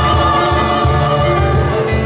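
Mixed choir of men and women singing held chords, with piano accompaniment.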